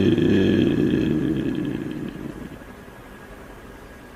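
A deep male voice chanting holds a long note that wavers and fades out about two seconds in, leaving faint hiss.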